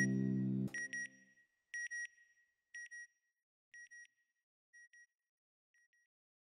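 Closing electronic music: a sustained low chord cuts off under a second in, followed by a synthesized double beep that repeats about once a second and fades away like an echo.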